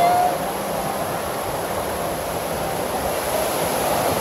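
Steady wash of water noise in an indoor children's wading pool, with the water rippling and lapping.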